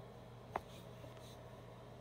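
Faint handling sounds: two small clicks about half a second apart over a low steady hum, as the telephone and camera are moved.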